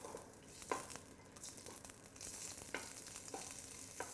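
Red onion and strips of guanciale frying faintly in oil and rendered pork fat in a stainless steel pot, stirred with a wooden spoon that scrapes and knocks against the pot a few times. The sizzle grows a little louder about halfway through.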